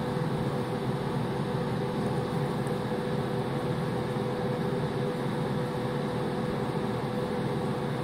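Steady mechanical hum with a constant mid-pitched tone running under a noisy background, unchanging throughout.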